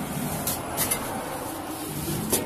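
Steel tilting hatch of a clothing-donation bin being worked: a steady rumbling noise, with two short clicks about half a second in.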